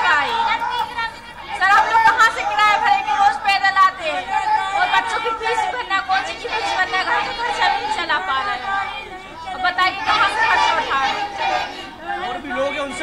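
Speech: a woman talking into a handheld microphone, with chatter from the people seated around her.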